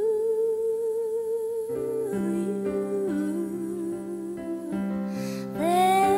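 A woman sings a slow song at a digital piano, holding a long note with vibrato before moving on to shorter notes over sustained piano chords. A louder note swoops up near the end.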